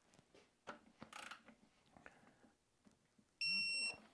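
Digital torque wrench beeping once near the end, a steady high tone about half a second long, signalling that the overdrive housing bolt has reached the 25 ft-lb setting. A few faint clicks come before it as the bolt is turned.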